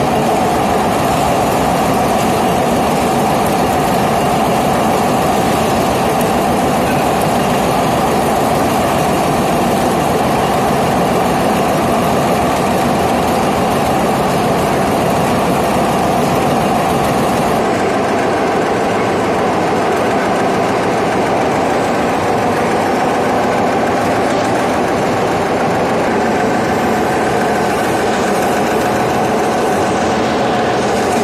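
Concrete pole centrifugal spinning machine running: steel pole moulds turning on their drive wheels, a loud, steady mechanical din with a strong midrange hum. Part of the high hiss falls away a little past halfway.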